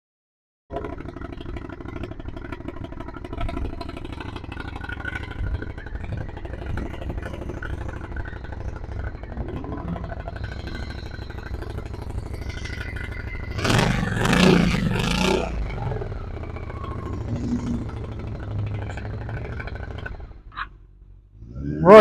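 Honda VT750C Shadow's V-twin engine idling steadily, with one louder surge about 14 seconds in. The sound stops suddenly near the end.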